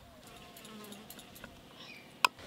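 Faint buzzing of a flying insect such as a fly, with a few light clicks of a steel spoon against steel tumblers.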